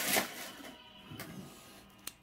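Trading cards being handled: a brief rustle of card stock sliding between the fingers at the start, then fading to faint shuffling.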